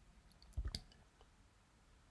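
A brief soft click about three quarters of a second in, in an otherwise near-silent pause.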